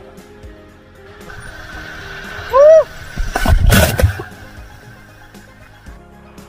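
A canyoneer sliding down a wet rock chute into a pool: rushing water builds from about a second in, a short high shout comes at about two and a half seconds, and a loud splash follows about a second later as the slider hits the water. Background music runs underneath.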